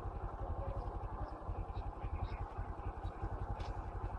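A small engine idling with a steady, rapid low throb.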